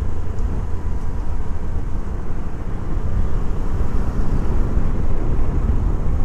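Motorcycle being ridden along a road, heard from the rider's seat: a steady low rumble of engine and wind noise.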